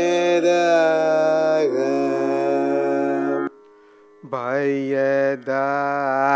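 A man singing a Carnatic vocal phrase in long held notes with wavering ornaments (gamakas). The pitch steps down partway through, and the singing breaks off briefly about three and a half seconds in before it resumes.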